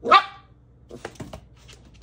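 A dog barks once, short and sharp, right at the start, followed by a few faint clicks about a second later.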